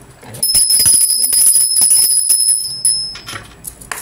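A small metal bell ringing rapidly: a high, steady ring with quick irregular strikes, starting about half a second in and fading out after about three seconds.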